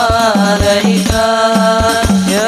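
Male voices singing a sholawat melody into microphones, holding long notes that slide between pitches, over a steady beat of hand-struck rebana frame drums, a few strokes a second.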